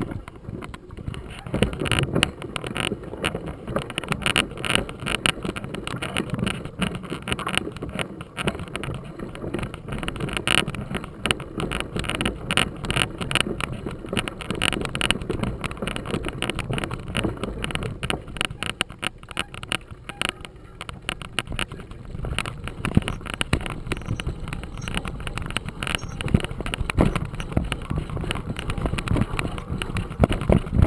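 Mountain bike rolling over a bumpy dirt singletrack: tyre noise on the dirt with continual irregular rattles and knocks from the bike over the bumps.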